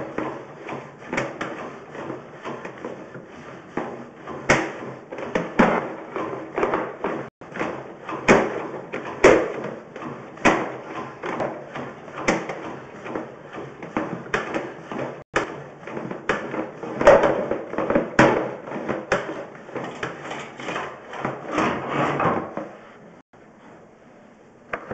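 Sewer inspection camera and its push cable being worked through a drain pipe: a steady run of irregular knocks, clicks and scraping that dies down near the end.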